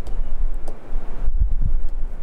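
Handling noise from a stylus being drawn and tapped on a pen tablet, picked up by a close microphone: uneven low thuds and rumble with a few light ticks.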